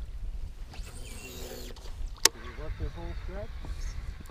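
Steady low rumble of wind and moving water on the microphone, with a faint voice talking quietly and one sharp click a little after two seconds in.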